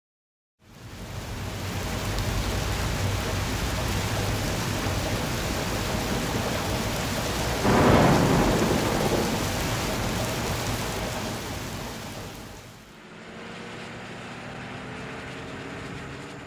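Steady rain with a loud rumble of thunder about eight seconds in that slowly dies away. The rain drops lower after about twelve seconds, with faint rising tones under it.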